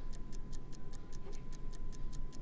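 Rapid, even ticking, about seven ticks a second, over a faint steady high tone.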